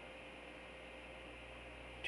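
Low, steady hiss with a faint hum: the room tone of a webcam microphone.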